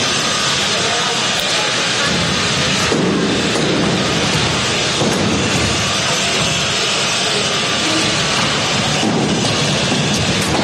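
Steady loud din of a robot combat match: hammer-weapon combat robots driving and striking, blended with the noise of the hall.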